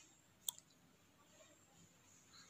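Near silence, room tone, with a single short, sharp click about half a second in.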